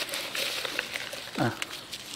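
Small dry onion sets knocking lightly against each other as they are tipped from a plastic bowl into a palm, a few faint clicks over a quiet outdoor background. A brief falling vocal sound comes about one and a half seconds in.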